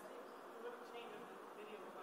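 A faint, distant woman's voice asking a question from the audience off-microphone, barely audible over steady room noise.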